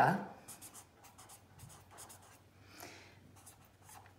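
Felt-tip pen writing on lined notebook paper: a series of faint, short strokes as a word is written out.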